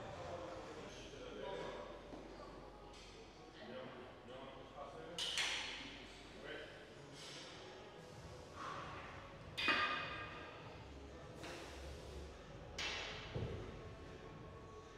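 A lifter's forceful breaths, strained pushes of air every few seconds in time with his dumbbell press reps, the strongest about five, ten and thirteen seconds in, over faint gym room sound.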